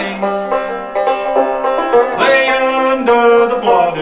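Open-back banjo being played, a steady run of plucked notes.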